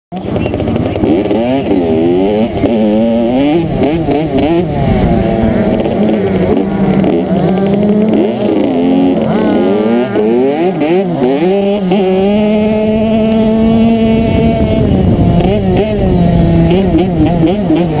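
Motocross dirt bike engine revving hard, heard close up from the rider's helmet, its pitch climbing and dropping again and again as it is throttled through the race, with a steadier stretch about two-thirds of the way through.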